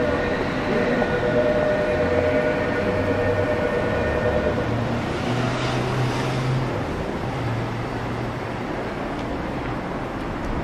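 A train running past: a steady rumble, with a low hum that steps up in pitch through the middle and falls back near the end. High steady tones fade out about four seconds in.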